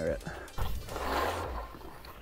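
Rushing noise of skiing, starting about half a second in: wind over an action camera's microphone and skis running on packed snow.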